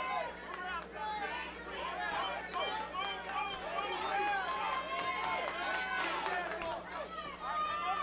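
Boxing crowd at ringside: many voices talking and calling out over one another, with a few short sharp clicks in the middle.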